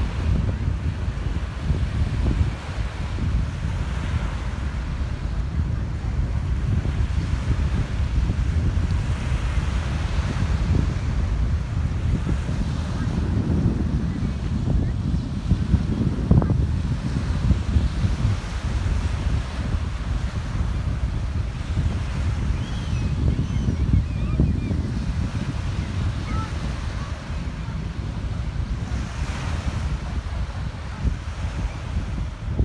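Sea waves washing onto a shingle beach, under wind buffeting the microphone with a steady, gusting rumble.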